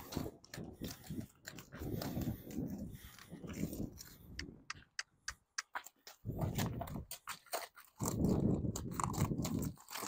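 A horse's hooves crunching and knocking on gravel as it shifts and circles, a string of irregular steps and clicks.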